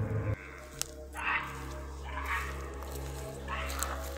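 Three short, hoarse animal-like calls about a second apart over a low steady hum: the strange sounds heard near the property at night.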